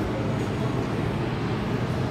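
Steady low hum of a stationary SBB double-deck electric train standing at the platform, its onboard equipment running.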